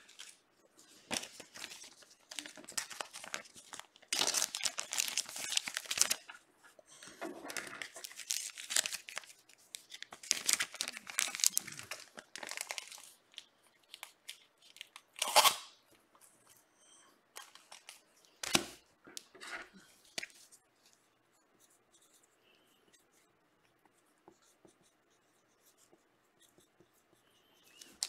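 Trading cards and their plastic and paper packaging being handled, with crinkling and tearing rustles in repeated bursts. Two sharp knocks come about halfway through, where something is set down on the table.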